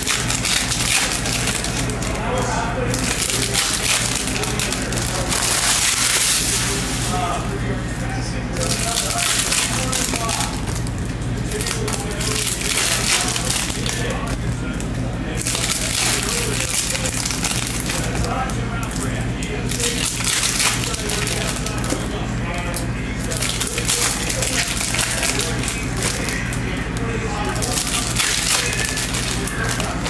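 Foil trading-card pack wrappers crinkling and a stack of chrome cards being handled and shuffled, in uneven bursts every second or two, with music playing underneath.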